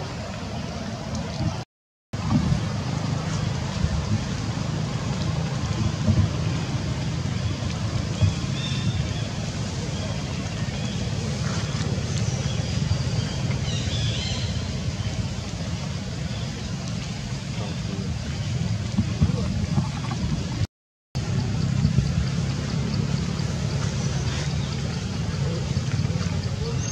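Steady outdoor background noise with a low rumble and faint high chirps now and then, broken twice by a brief drop to silence, about 2 seconds in and about 21 seconds in.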